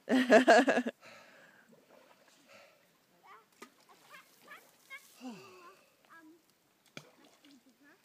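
A person laughing loudly for about the first second, then only faint, scattered voices and small sounds.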